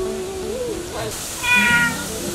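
A domestic cat meows once, a short, high call about one and a half seconds in, over a held line of background music.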